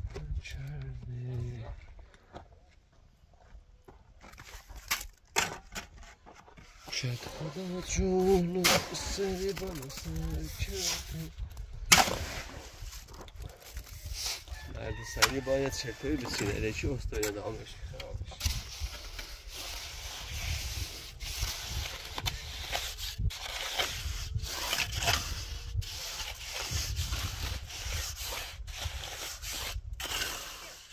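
Concrete blocks being set into wet mortar by hand: scattered knocks and taps as blocks are pressed and tapped into place. Later comes a longer stretch of scraping and rubbing with small knocks, as mortar is worked along the top of the block wall.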